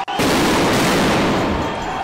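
A sudden loud bang in a street riot where tear gas is being fired, going on as a dense roar of noise for over a second and slowly fading.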